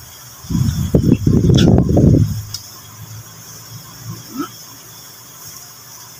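Metal spoon stirring and tossing wet raw fish and vinegar in a ceramic bowl: a loud burst of wet mixing and clinks in the first couple of seconds, then a steadier, quieter stirring.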